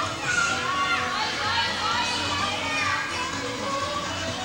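High-pitched voices shouting and calling over one another during an indoor soccer game, with music playing in the background.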